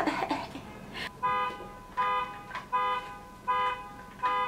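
A car alarm blaring its horn in short, evenly spaced blasts, about one every three-quarters of a second, starting about a second in.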